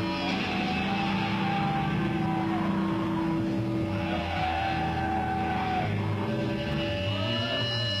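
Black metal band playing live through the PA: a loud, dense wash of distorted electric guitar with long held, slowly bending tones. Near the end, steady held notes come in.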